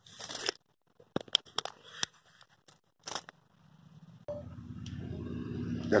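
Scattered clicks, scrapes and rustles of a metal tape measure being handled against an anvil. About four seconds in, a steady low engine hum sets in and keeps going.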